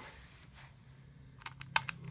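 A few light clicks of a screwdriver and small screws being handled against a plastic brush-cutter throttle handle during reassembly, with one sharper click near the end, over a faint steady hum.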